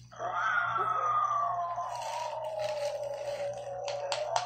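A high-pitched voice holding one long note that slides slowly down in pitch for over three seconds.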